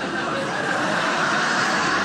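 Studio sitcom audience laughing and clapping, a steady wash of noise with no words.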